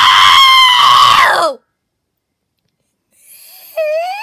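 A person's voice screaming, long, loud and high-pitched, for about a second and a half before cutting off. Near the end a rising vocal squeal begins.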